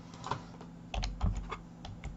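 Computer keyboard keystrokes: a short run of separate taps as a number is typed in, most of them in the second half.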